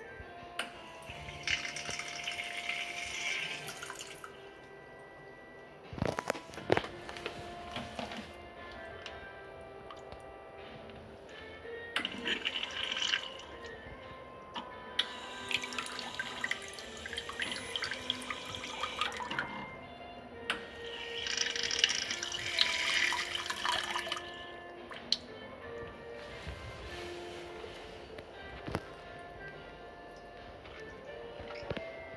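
TOTO Washlet SB (TCF6221) bidet wand spraying water into a toilet bowl in several bursts of a few seconds each, over steady background music.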